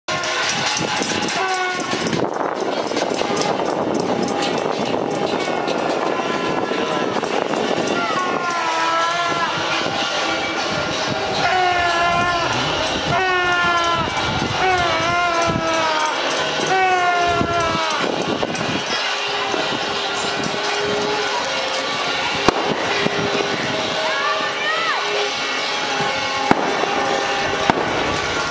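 Widespread clapping and noise-making from many rooftops at once, a dense steady clatter. Horn blowing runs through the middle, several long wavering pitched blasts, with a few sharp claps or bangs near the end.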